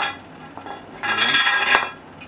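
Metal weight plates clinking on a dumbbell bar as a plate is slid onto it: a sharp clink at the start, then a ringing metallic scrape for almost a second in the second half.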